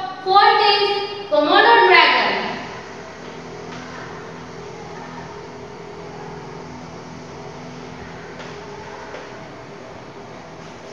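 A woman's voice for about the first two and a half seconds, then a steady low room hum.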